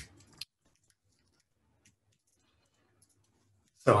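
Two sharp computer keyboard key clicks, the second about half a second after the first, then near silence with a few faint ticks.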